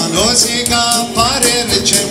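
Live band music: a man singing with gliding, held notes over an electronic keyboard, with light percussion strokes keeping time.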